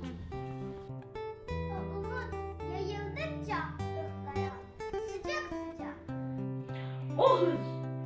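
Instrumental background music with plucked-string notes over held bass tones, playing under a child's poetry recitation; a louder child's voice comes in near the end.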